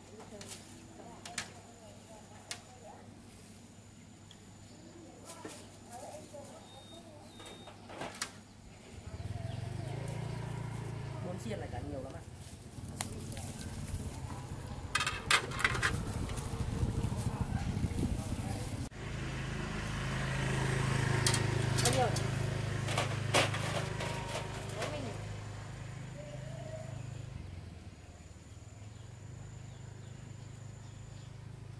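A clear plastic bag rustling and crinkling as grilled meat is packed into it, among scattered small clicks and taps. From about nine seconds in, a low steady hum runs underneath and eases off near the end.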